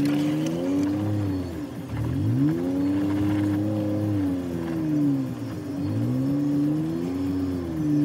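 Jeep engine climbing a rocky off-road trail under load, its pitch rising, holding and easing off again in slow swells: one near the start, a longer one from about two seconds in, and another from about six seconds in.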